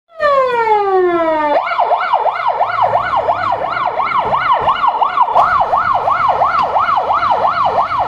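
Ambulance's electronic siren: a falling wail for about the first second and a half, then a fast yelp sweeping up and down about three times a second.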